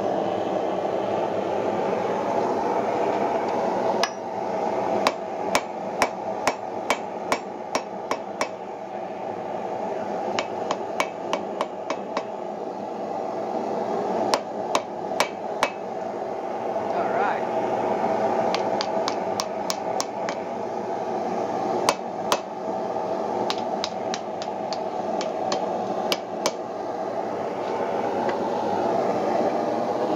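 Hand hammer striking hot iron on an anvil in runs of several quick blows, starting about four seconds in and stopping near the end. The forge fire keeps up a steady rushing noise underneath.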